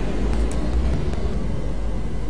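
Steady low background hum, with two faint clicks about half a second and a second in.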